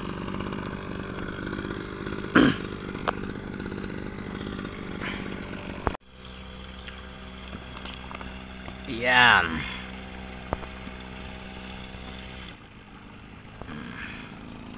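A small engine running steadily, its hum stopping about a second and a half before the end. About nine seconds in comes a short, loud call that falls in pitch.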